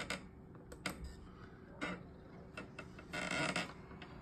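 Several sharp, separate clicks of a computer mouse button as the viewer program is worked, with a brief soft rustling noise about three seconds in.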